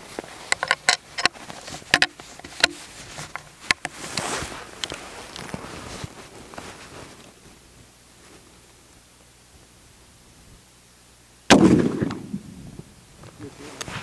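Springfield Trapdoor Model 1884 .45-70 rifle: a run of sharp metallic clicks as the single-shot trapdoor breech is worked, then, about eleven and a half seconds in, a single shot, by far the loudest sound, whose boom dies away over about a second.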